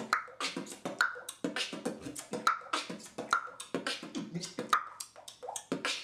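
Solo beatboxing: a fast routine of sharp percussive mouth sounds, about five or six hits a second, mixed with short pitched vocal sounds.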